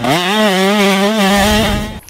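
Motorcycle engine revving up quickly and held at high revs at a steady pitch, cutting off near the end.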